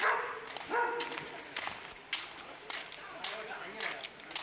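Footsteps on pavement, about two steps a second, over a steady high whine that drops out briefly about two seconds in.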